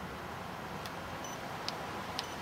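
Steady low background hiss with no voice, broken by two or three faint ticks.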